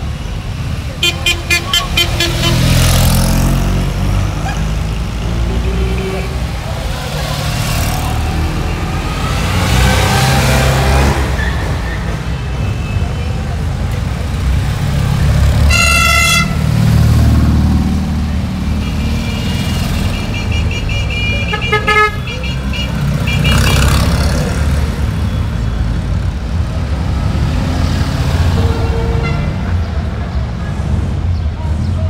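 Vintage Fiat 500s driving past one after another, their small two-cylinder engines running, with car horns tooting: quick repeated beeps about a second in, a single long horn note about halfway through, and a run of toots a few seconds after that.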